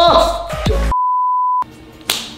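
Censor bleep: a single steady, pure beep about two-thirds of a second long, starting about a second in. It blots out a swear word ("cabrón"), and all other sound is cut out beneath it.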